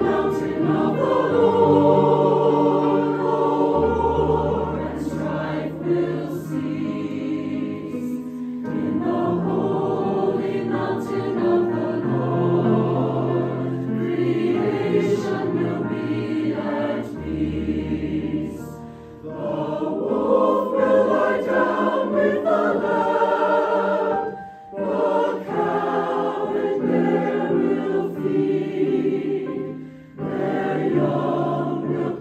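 A mixed choir of men and women sings a choral anthem with piano accompaniment, long low piano notes held under the voices. The sound dips briefly twice in the latter half, at breaks between phrases.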